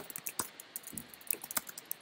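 Computer keyboard typing: a quick, irregular run of key clicks as a line of code is typed.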